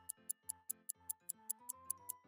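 Clock-ticking sound effect, about five quick ticks a second, over soft background music: a thinking-time cue for guessing the next number.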